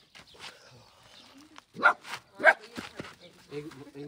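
A dog barking twice, about half a second apart, near the middle.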